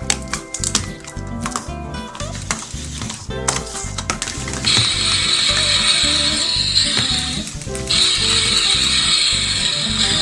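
Background music with a steady beat, with light plastic clicks of toy egg capsules being handled early on. About five seconds in, a toy frying pan's electronic sizzling sound effect plays for about three seconds, breaks off briefly, and plays again for about three seconds.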